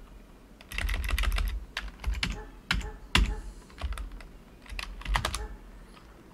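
Typing on a computer keyboard: several quick runs of keystrokes with short pauses between them, as commands are entered at a terminal.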